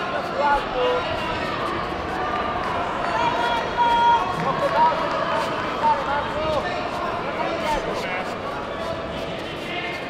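Indistinct shouting from coaches and spectators around a kickboxing mat, echoing in a large sports hall, with a few sharp knocks from strikes landing.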